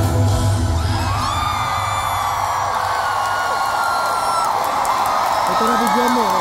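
A pop-rock band's final chord hit at the start, ringing out for about a second. Then a large concert crowd cheers, with many high voices whooping.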